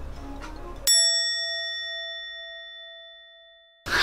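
A single bell-like ding about a second in, ringing out and fading over nearly three seconds. All other sound drops out around it, as with a sound effect added in editing.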